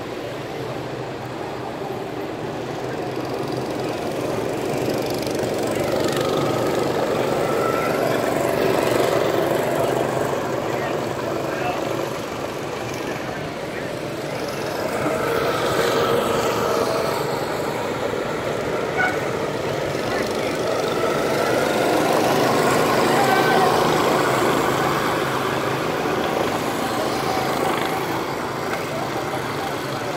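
Go-kart engines running on a track, growing louder and fading several times as karts pass, with the engine pitch rising and falling.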